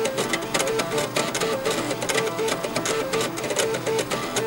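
Stepper motors of a bank of floppy disk drives playing a melody. The read-head steppers buzz out a quick run of short notes in a steady rhythm, with a clicky, mechanical edge.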